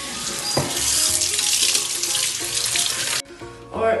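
Kitchen tap running into the sink while hands are washed under it, a steady splashing rush that is turned off suddenly about three seconds in.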